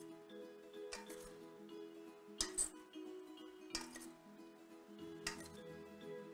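Quiet background music, with metal salad servers clinking against a stainless steel bowl four times, about every one and a half seconds, as salad leaves are tossed.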